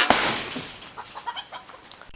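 Chickens clucking in short scattered calls, with a loud rustling noise in the first half second.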